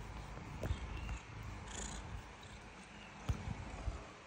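Orange cat purring close to the microphone as it rubs against the phone, a steady low rumble, with two soft knocks, one about a second in and one near the end.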